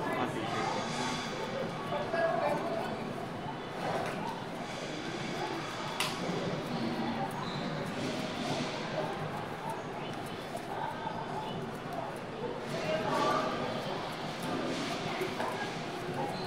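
Indistinct background voices of several people talking, with one sharp click about six seconds in.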